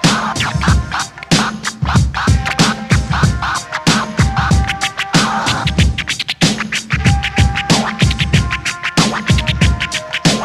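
Instrumental hip hop beat with a steady drum and bass groove and turntable scratching over it, with no rapping.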